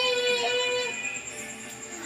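A young girl singing, holding one long note that stops about a second in, after which the sound drops to a quieter stretch.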